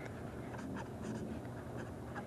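Marker pen writing on paper: a string of short, quiet scratching strokes at an uneven pace as letters and symbols are drawn.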